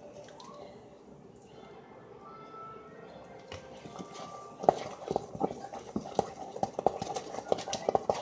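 A spoon clicking and knocking against a metal bowl of muffin batter, an irregular run of taps, several a second, that starts about halfway through.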